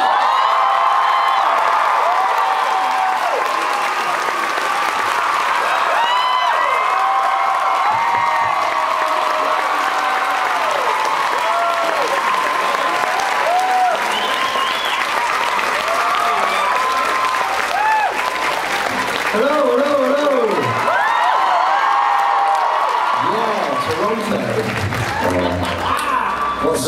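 A large audience applauding and cheering without a break, with many shrill screams and whoops over steady clapping.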